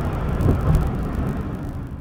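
Car traffic and road noise heard from a moving vehicle: a steady low rumble that eases slightly toward the end.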